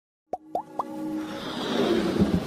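Intro sound effects: three quick pops that glide upward in pitch, each a little higher than the last, followed by a swelling whoosh as electronic music builds.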